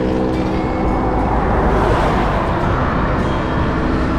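A motor vehicle passing on the road, its noise swelling and fading around the middle, over steady wind rumble on the microphone of a moving bicycle.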